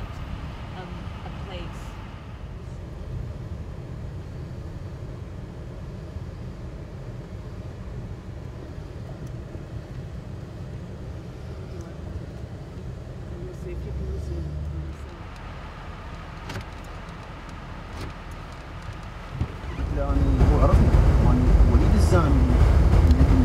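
Car cabin noise while riding through city traffic: a steady low engine and road rumble with faint voices. Near the end it suddenly grows much louder.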